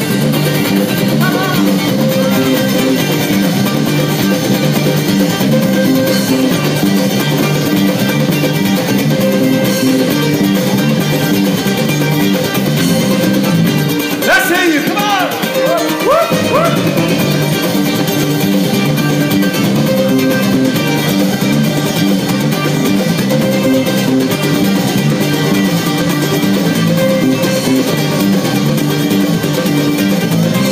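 Live ukulele band playing an instrumental passage, with ukuleles strumming over drums and bass through a stage PA, at a steady beat. A voice cuts in briefly about halfway through.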